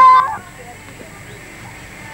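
A person's drawn-out vocal call that ends about a third of a second in, followed by quiet background with a few faint hoof thuds of a mare walking on a dirt track.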